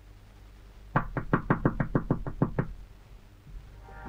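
Rapid knocking on a door: a quick run of about eleven knocks, about six a second, starting about a second in and lasting under two seconds.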